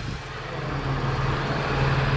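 Chevrolet Monte Carlo SS's supercharged 3800 Series II V6 idling steadily, heard close over the open engine bay, growing a little louder toward the end.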